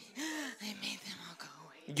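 A woman's quiet, half-whispered voice saying a few words into a handheld microphone, in short rising-and-falling sounds.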